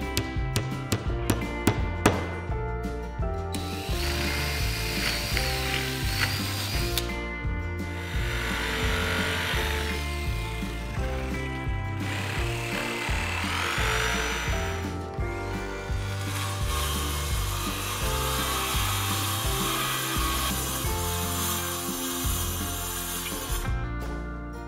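Background music over workshop sounds: a few hammer taps driving nails into plywood siding in the first seconds, then power saws cutting plywood sheets, a jigsaw and a cordless circular saw.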